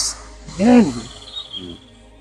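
A man's voice makes one short murmured syllable a little before the middle, with a small sound after it, over a faint, steady, high chirring of insects.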